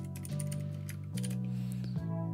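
Computer keyboard keys clicking as a keyboard shortcut is typed, over quiet background music of held low notes that change twice.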